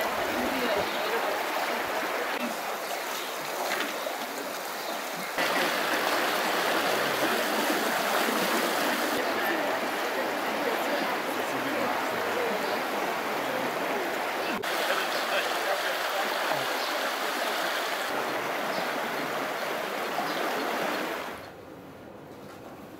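Steady rushing of a shallow, stony river riffle, stepping abruptly louder about five seconds in and dropping away suddenly near the end.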